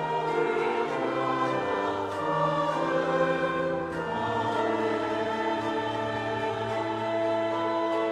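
A congregation singing a hymn in unison, with sustained instrumental accompaniment and long held notes.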